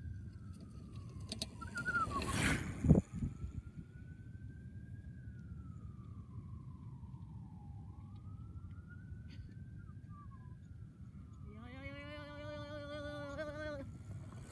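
A distant siren wailing, its pitch slowly rising and falling about every five seconds. About two to three seconds in, a bicycle rolls down the grass close past the low camera with a rush of noise and a sharp thump. Near the end a long, wavering held tone sounds over the siren.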